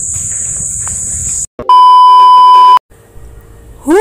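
A loud, steady electronic beep lasting about a second, starting about a second and a half in, set between two short dropouts where the footage is cut. Before it there is a steady high-pitched buzz over outdoor background noise.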